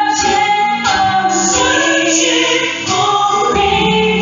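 Live church worship band playing a slow worship song, a woman leading the singing with long held notes over the band. It is heard through the hall's hanging loudspeakers from the pews.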